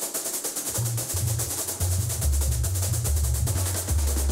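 Recorded samba batucada percussion playing from a web app: a fast, even high ticking groove, joined about a second in by the heavy bass drums (surdos) alternating between two deep notes.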